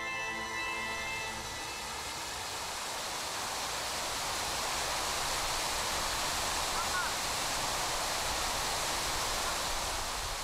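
Water cascading down the tiers of a large fountain, a steady rushing splash. Chiming mallet music fades out in the first second or so.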